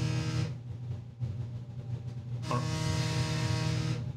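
A mobile phone vibrating on a desk with an incoming call, buzzing in pulses: one buzz ends about half a second in and the next starts about two and a half seconds in, over a steady low hum.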